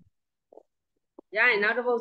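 Speech only: after a silent pause of just over a second, a woman's voice starts talking again.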